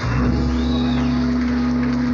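Live rock band playing: a long held note over a low sustained bass note, starting right at the beginning and holding steady.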